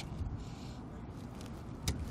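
Quiet handling of a ratchet tie-down strap buckle, with one sharp metal click near the end as the ratchet's release is opened to let off the strap tension.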